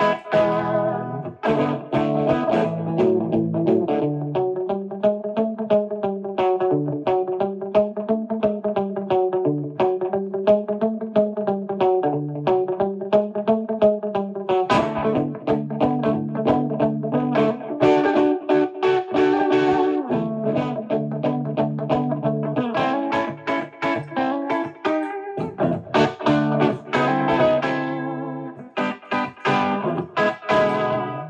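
2020 Epiphone Wildkat semi-hollow electric guitar with a Bigsby, played on its bridge dog-ear P90 pickup through slapback echo with no reverb: quick picked lines and chords. For a long stretch in the first half, held notes waver up and down in pitch.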